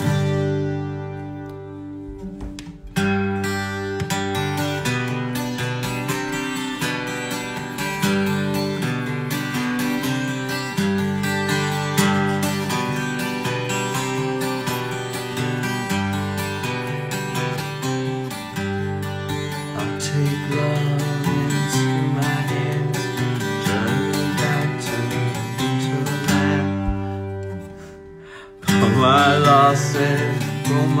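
A twelve-string Guild acoustic guitar is strummed and picked, its chords ringing steadily. Near the end the playing fades away, then a loud strum comes in with a man singing.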